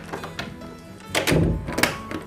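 Heavy thuds against a wooden door, a deep hit about a second in and a sharper one near the end, over soft background music.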